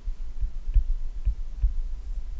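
Stylus writing on a tablet, heard as a run of irregular low thumps with faint ticks from the pen tip.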